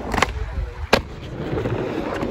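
Skateboard rolling over wooden ramp panels: a steady low rumble of the wheels, with a lighter knock near the start and one sharp clack about a second in, the loudest sound, as the board's trucks or tail strike the ramp.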